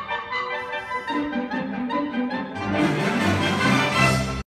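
Orchestral music with strings, lower notes coming in after about a second and growing louder toward the end.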